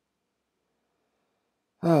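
Near silence, then near the end a man's voice begins a sighing "Oh".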